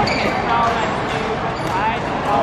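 A doubles badminton rally: rackets striking the shuttlecock and players' quick footwork on the court, with voices in the background.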